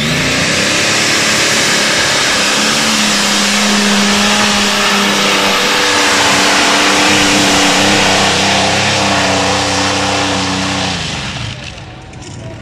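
Free-class (2.5 t) pulling tractor, the 'Green Monster', at full throttle through its pull: a very loud, steady engine sound whose pitch climbs in the first two seconds, then holds and fades away near the end.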